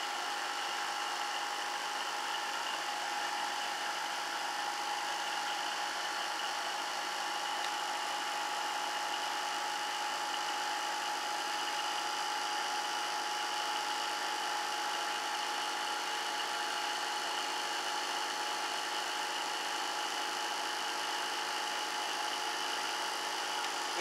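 Homemade dual-rotor permanent-magnet motor with coil-driven rotors spinning at high speed, about 3,470 rpm, giving a steady, unchanging whine.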